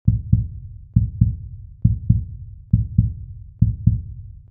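Heartbeat sound effect: low, deep double thumps (lub-dub) repeating steadily, five beats in all, about one every 0.9 seconds.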